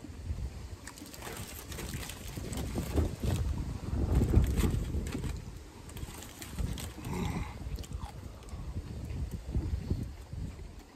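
Wind buffeting the microphone in uneven gusts, loudest about four seconds in, over the wet mouth sounds of someone chewing a burger close to the microphone.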